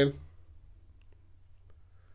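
A man's voice finishes a word right at the start, then a pause with only a faint low hum and a few faint clicks.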